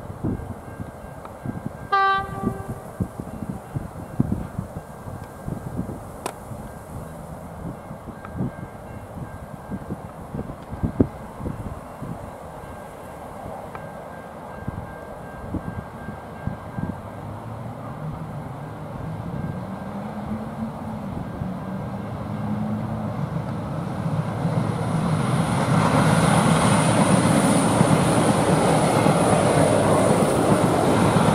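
A V/Line VLocity diesel railcar sounds one short horn blast about two seconds in. From the middle on, a passenger train's engine note and wheel-on-rail noise build up, becoming loud over the last few seconds as it passes close by.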